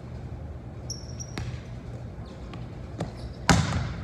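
A volleyball being struck and bouncing on a hardwood gym floor, with a couple of lighter knocks early and the loudest smack near the end, echoing in the hall. A brief high squeak comes about a second in over a steady low hum.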